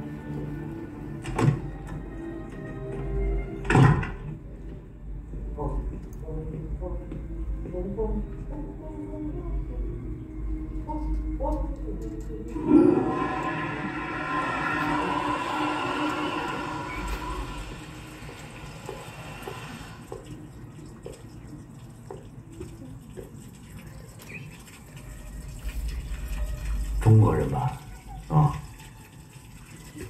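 A film soundtrack heard through cinema speakers: two sharp knocks in the first few seconds, then water running steadily for about seven seconds a little before halfway, followed by quieter room sound and two more thumps near the end.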